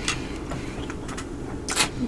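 Soft mouth sounds of a person chewing a bite of food, with a few faint clicks and a short hiss near the end.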